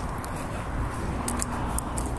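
Steady outdoor street noise with a low rumble, and a few faint scuffs of footsteps in the second half.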